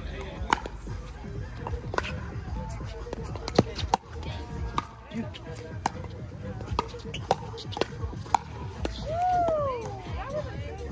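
A pickleball rally: sharp pops of paddles striking a plastic pickleball, about a dozen, every half second to a second. Near the end a voice calls out with one drawn-out exclamation that rises and then falls in pitch.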